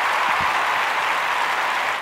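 A steady, unbroken hissing drone, loud and even, that sits in the middle of the pitch range.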